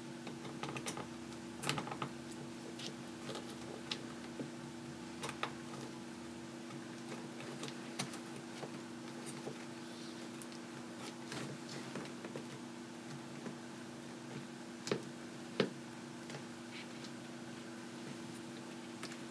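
Light, irregular clicks and taps of small drone frame parts, a 3D-printed TPU camera mount and frame plates, being handled and fitted together by hand, with two sharper ticks late on. A steady low hum runs underneath.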